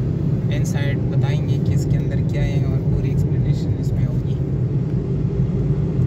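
Steady low rumble of a car's road and engine noise heard from inside the moving car. A voice speaks briefly over it twice.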